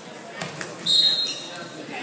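Wrestlers hitting the gym mat during a takedown: two sharp knocks, then a short high squeal about a second in, over spectators' voices echoing in the hall.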